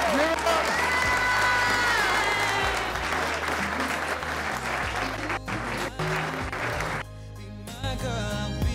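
A room of guests clapping, with a song playing over it. The clapping thins out after a few seconds and drops off sharply near the end.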